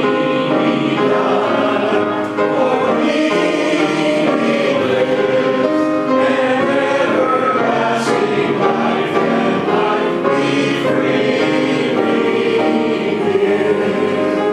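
Congregation singing a hymn together, with a piano accompanying, held notes moving from one to the next at a steady hymn pace.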